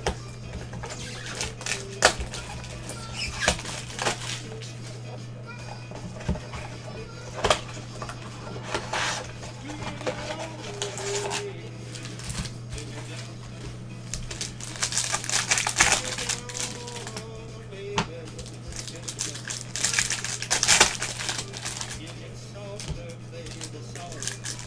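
Hands opening a trading-card box and its packs: cardboard taps and knocks, plastic wrapper crinkling and cards sliding against each other, in scattered clicks with louder crinkly bursts about two-thirds of the way through. A steady low hum runs underneath.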